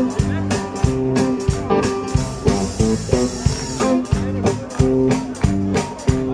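Live band playing an instrumental passage: a steady drum beat under bass, electric guitar and keyboard.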